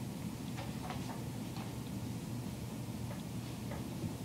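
Classroom room tone: a steady low hum with a handful of faint, scattered clicks and ticks.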